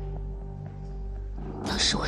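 Soft background music with steady sustained low tones. Near the end a woman's voice comes in with a loud, breathy, noisy sound as she starts to speak.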